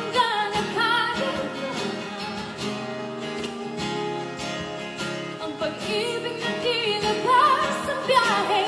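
Live acoustic pop ballad: a female vocalist singing over strummed acoustic guitar, her voice moving between chest voice and falsetto and climbing near the end.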